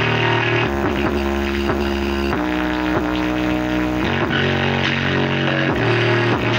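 Music played at high power through a bare 5-inch woofer, its cone at large excursion: a sustained low bass note under repeated sliding higher notes.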